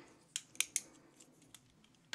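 A few light, sharp clicks in the first second of plastic eyeliner pencils knocking together as they are handled over a clear plastic makeup drawer, then near quiet.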